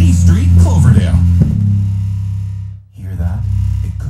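Music with heavy, boomy bass played through an Energy AS90 powered subwoofer, its amplifier repaired and working. A voice is heard over the music in the first second and a half, and the sound fades and drops out briefly near three seconds before picking up again.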